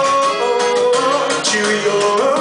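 A man singing with his own acoustic guitar accompaniment in live performance. The voice holds long notes that bend up and down over continuous picked and strummed guitar.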